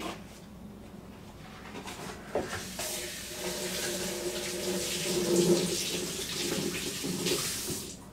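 Kitchen faucet running into a sink with hands being washed under it, turned on about three seconds in and shut off suddenly just before the end.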